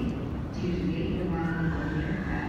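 Indistinct voices of people talking nearby, over a steady low background hum.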